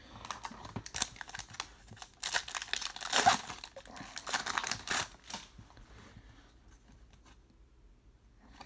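Foil wrapper of a Topps Star Wars Galaxy trading card pack being torn open and crinkled by hand, loudest between about two and five seconds in. It is preceded by light rustling as the pack is pulled from the box.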